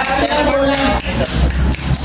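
Several sharp knocks or taps at uneven intervals, over voices and a low steady hum.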